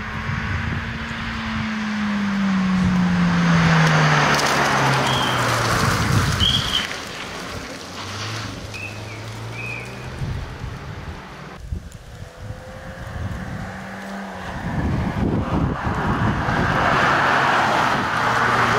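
Ford Focus rally car driving a stage in several passes. Its engine note falls steadily over the first few seconds as the car goes by and slows, holds lower and then higher in the middle, and the car is loud again under acceleration in the last few seconds.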